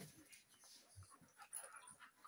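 Two dogs play-fighting: faint short dog noises and small scuffles as they wrestle.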